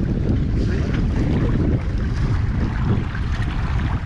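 Wind buffeting the microphone, a steady low rumble, over the wash of choppy sea water.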